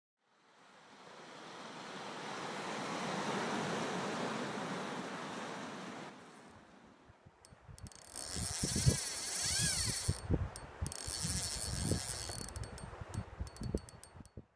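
Outdoor wind and water noise: a rushing swell that rises and fades out by about six seconds, then gusty wind buffeting the microphone in irregular low thumps over a hiss.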